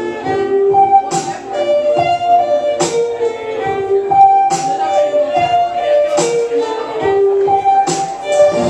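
Violin bowed live, playing a slow melody of long held notes, over a steady backing beat of sharp percussive hits.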